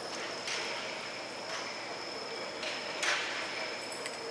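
Indoor arena ambience: a steady hiss with a thin high whine, broken by four short noisy scuffs, the last and loudest about three seconds in, as horse and cattle move over the dirt.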